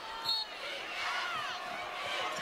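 Basketball shoes squeaking on a hardwood court in short, high chirps as players cut and jostle for position, over steady arena crowd noise.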